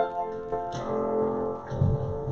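Instrumental church music on a keyboard, sustained chords with a new phrase entering under a second in. Low thuds come in near the end.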